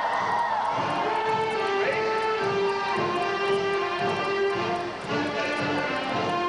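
A grade-school concert band playing, with held wind-instrument notes that change pitch every second or so.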